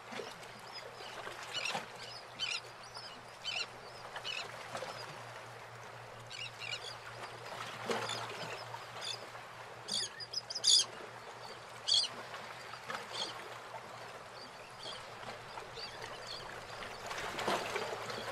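Short bird calls at irregular intervals over a steady background hiss, a few louder calls in the middle.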